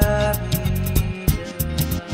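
IDM-influenced electronic music: a pulsing bass and sharp, rapid clicking percussion under sustained synth tones.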